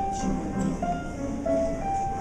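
Upright piano played solo: a slow melody of held notes in the treble over repeated chords lower down.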